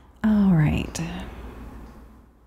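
A woman's short wordless vocal sound, falling in pitch, followed by a sharp click and a brief second murmur.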